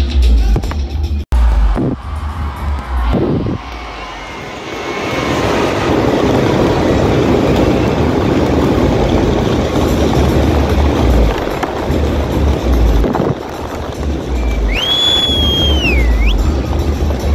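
Loud music with a heavy bass beat, over which a dense rushing crackle of fireworks sets in about five seconds in as a Ravana effigy packed with fireworks goes up in flames. A shrill whistle sounds near the end.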